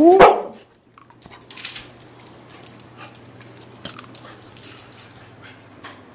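Red-nose pit bull giving one short, rising, Chewbacca-like vocal call while begging for a treat, ending about half a second in. Quieter scattered clicks and rustling follow.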